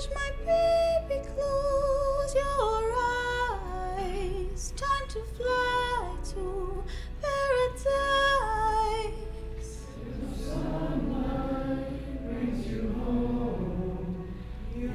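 A woman singing a lullaby unaccompanied, holding clear notes with vibrato that step down in pitch phrase by phrase; from about ten seconds in her voice moves lower and less distinct.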